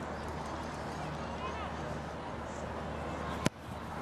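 Low murmur of a rugby stadium crowd during a penalty kick at goal, then a single sharp thump of a boot striking the ball about three and a half seconds in.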